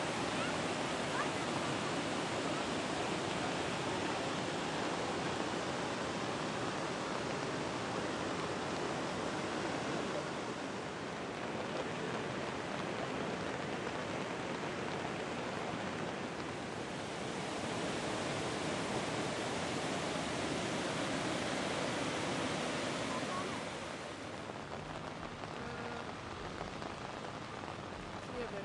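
Steady rushing noise of floodwater and falling rain, a little quieter in the last few seconds.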